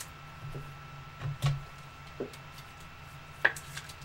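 A few scattered light taps and clicks of trading cards being handled and set down on a tabletop, the sharpest about three and a half seconds in. A faint steady hum runs underneath.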